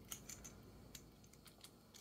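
Faint, scattered light clicks and taps of small plastic and metal parts of a folding pistol brace hinge handled in the fingers while hardware is fitted, most of them in the first half second.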